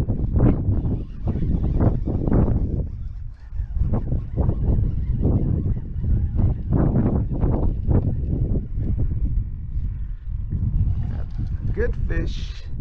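Wind rumbling on the microphone, surging in gusts about every second.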